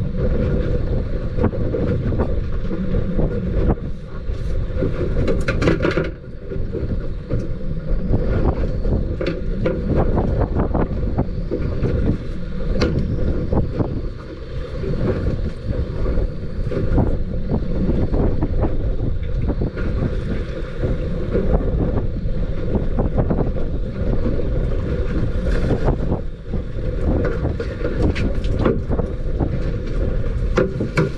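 Strong wind buffeting the microphone over choppy water, a steady low rumble with scattered short clicks and knocks.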